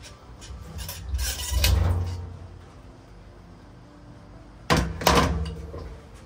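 Coil spring sliding out of an upturned motorcycle fork leg, a low scraping rumble about a second in, followed near the end by a couple of sharp metallic knocks as the spring and fork parts are handled.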